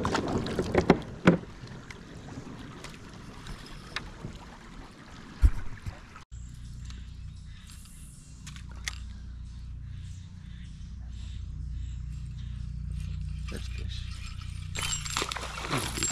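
Gear clicks and knocks against a plastic kayak: a few sharp clicks early on and one loud knock about five seconds in. After an abrupt cut, a steady low rumble runs on. A louder rush of noise comes near the end.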